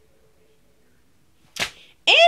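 Near-silent room tone, then a single sharp click or snap about a second and a half in, dying away quickly.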